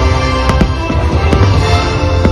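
Fireworks show soundtrack music playing loud, with firework bursts cracking over it: a few sharp bangs about half a second in and again a little past the middle.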